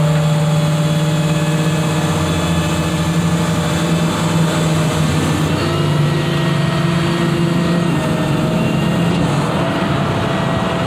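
Tow truck's engine idling steadily, a constant hum that shifts slightly in pitch about halfway through, with freeway traffic passing.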